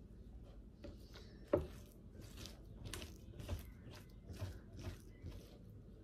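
Metal spoon scraping raw mackerel flesh off the skin on a plastic cutting board: a run of short, irregular, faint scraping strokes, with one sharper knock about a second and a half in.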